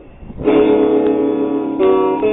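Electric guitar: a short lull, then a strummed chord about half a second in that rings on, and a new chord struck near the end.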